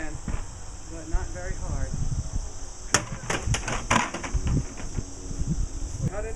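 A sickle swung at a small plastic water bottle standing on an upturned plastic bucket: one sharp hit about three seconds in, then a quick run of knocks and clatters for about a second. A steady high insect drone runs underneath.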